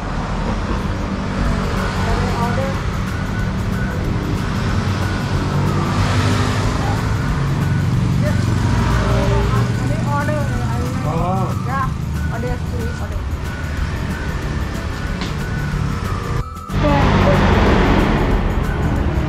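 Motorcycle running on the road, a steady low drone with wind noise, mixed with music and indistinct voices. A brief dropout near the end, after which the sound comes back louder.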